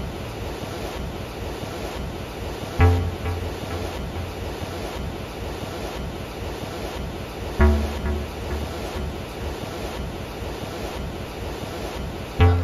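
Ocean surf washing steadily onto the beach. A low instrumental chord is struck twice, about five seconds apart, each ringing out and fading over it.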